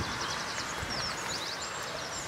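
A small songbird singing: a quick series of short, high chirps, some sliding down in pitch, over a steady outdoor background.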